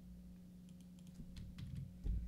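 Faint computer keyboard keystrokes, a scattered run of light clicks, most of them after the first half-second, over a low steady room hum.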